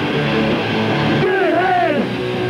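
Punk rock band playing live, with electric guitars, bass and drums. A wavering melody line comes in over the band about halfway through.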